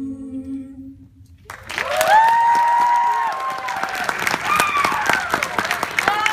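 An a cappella group's last held chord fading out, then about a second and a half in an audience breaks into loud applause with high-pitched cheers and whoops.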